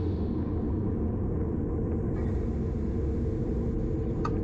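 Wind rushing over the microphone of a bike-mounted camera on a road bike racing at about 28 mph, heard as a steady low rumble.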